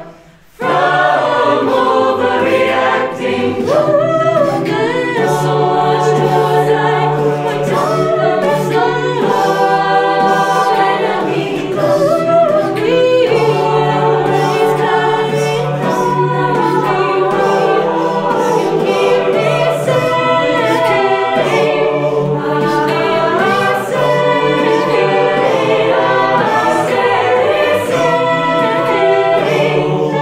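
Student a cappella group singing in close harmony, with a female lead voice over the backing voices and a steady vocal-percussion beat. A short break right at the start, then the full group comes back in.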